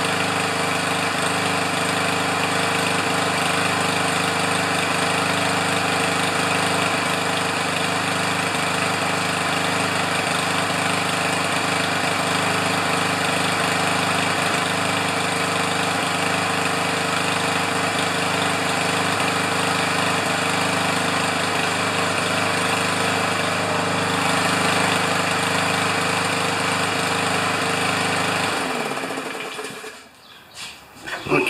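Powermore lawn mower engine running steadily at speed, then shut off about a second and a half before the end, winding down quickly.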